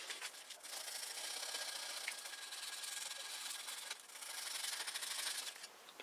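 Crumpled ball of aluminium foil rubbed back and forth over a chrome-plated bicycle mudguard: a faint, steady scratchy rubbing with a brief pause about two-thirds of the way through. The foil is polishing rust spots off the chrome.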